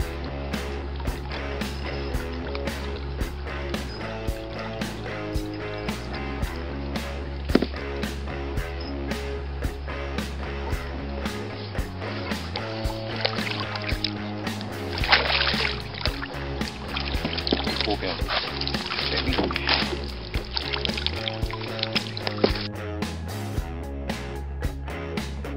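Background music with a steady drum beat and a bass line.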